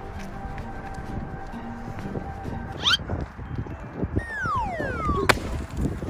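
Cartoon-style sound effects over background music: a short rising squeak about three seconds in, then a long falling whistle that ends in one sharp hit near the end.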